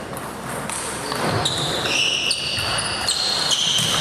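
Table tennis balls clicking off bats and tables in a hall: a few separate hits, not a steady rally. From about a second and a half in, high held tones change pitch in steps.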